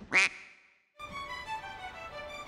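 A single short duck quack sound effect about a fifth of a second in, fading to a brief silence. Music begins about a second in.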